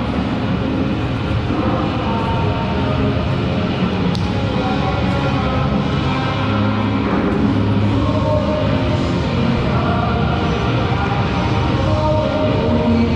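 Music playing, with long held notes over a steady low end.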